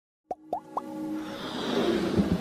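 Logo-intro sound effects: three quick plops, each bending upward in pitch, about a quarter second apart, followed by a steadily swelling musical build-up with a held tone.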